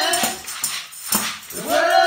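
A woman's voice singing through a microphone, with a tambourine jingling. One sung line ends just after the start, there is a short gap filled with tambourine shakes, and a new line rises near the end.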